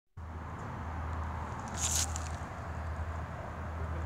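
Steady low outdoor rumble, with one short rustle or crackle about two seconds in.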